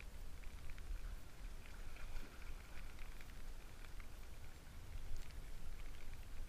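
Outdoor wind rumbling on the camera microphone, with faint, scattered light ticks through the middle.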